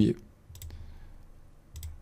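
Computer mouse clicking faintly: a quick pair of clicks about half a second in and another pair near the end.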